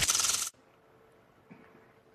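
A short buzzing game-show sound effect, marking a letter revealed on the word board, cuts off sharply about half a second in. It gives way to near quiet with a faint steady hum.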